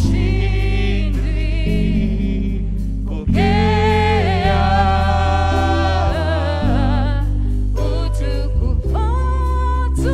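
Gospel worship song sung by a small group of singers, holding long notes with vibrato, over instrumental backing with a strong bass line.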